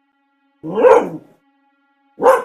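A dog gives one drawn-out bark about half a second in, over faint steady music tones.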